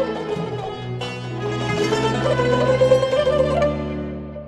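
Azerbaijani tar playing a plucked melody with fast repeated, tremolo-like notes over long held bass notes of an accompaniment.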